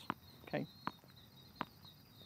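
Tennis ball bounced on a hard court before a serve: sharp taps about three-quarters of a second apart. A faint, steady, high insect chirring sounds underneath.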